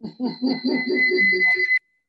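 A woman's voice laughing in quick pulses over a steady high-pitched whistle that grows louder, a feedback squeal on the call's audio. Both cut off abruptly near the end, and the audio drops out.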